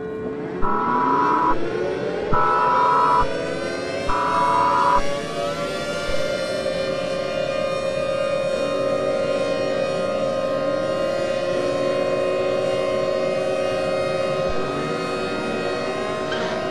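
EAS alert audio: three short bursts of digital header data tones, each about a second long, over civil defense sirens winding up in pitch. From about six seconds in, the sirens hold a steady wail, with another wind-up now and then.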